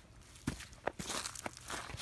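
A few footsteps on grass strewn with dry fallen leaves, each a short crunch.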